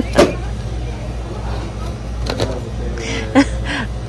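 A steady low hum in the background, with a few light clicks and knocks as small lidded glass jars are handled; a woman's voice is heard briefly near the end.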